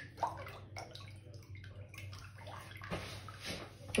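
Water running out of a water-filled balloon into a bathroom sink: faint, uneven splashing with a few small drips and clicks.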